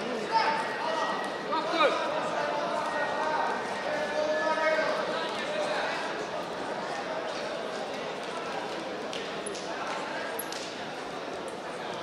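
Indistinct voices and calls echoing in a large sports hall over steady crowd chatter, with two sharp knocks in the first two seconds.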